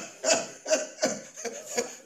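A man laughing in a run of short bursts, about three a second, the first the loudest.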